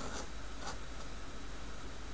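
Tachikawa Maru Pen dip nib scratching over paper in short ink strokes, two in the first second, then only a faint hiss.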